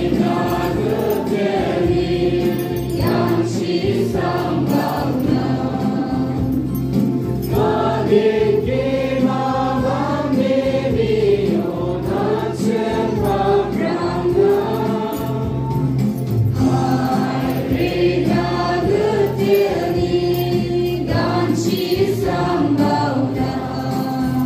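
A group of voices singing a song together, with steady low musical accompaniment underneath.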